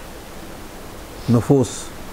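Mostly a steady hiss of background noise, with a man's voice saying one short two-syllable word about a second and a quarter in.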